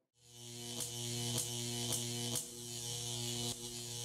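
Electrical hum and buzz of a neon sign: a steady low hum with a hissing buzz over it, broken by a few brief crackles like the tubes flickering. It fades in quickly at the start.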